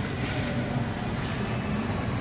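Steady background hubbub of a large indoor mall hall, with a constant low rumble.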